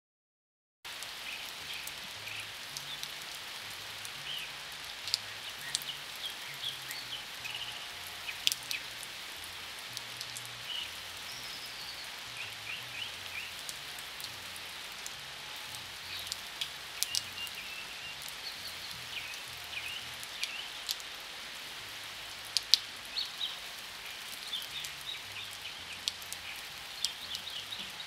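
A steady rain-like patter of drops and sharp crackles after a silent first second, with small high chirps scattered through it. Faint low tones shift in steps underneath.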